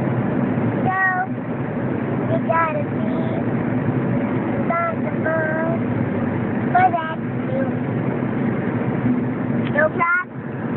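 Steady road and engine drone inside a moving car, with about eight short, high-pitched vocal calls from a young girl, one every second or two.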